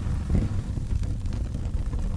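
A low, continuous rumble from the cartoon's soundtrack, uneven in level, with little sound above it.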